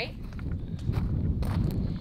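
Footsteps on loose gravel, a few irregular steps, over a steady low rumble of wind on the microphone.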